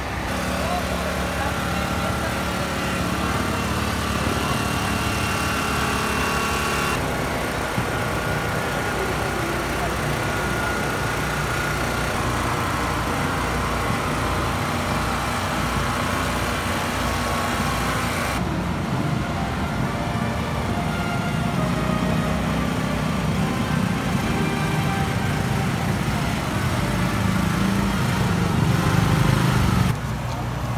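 A small engine running steadily under the voices of a crowd. The high hiss drops off abruptly about seven and again about eighteen seconds in.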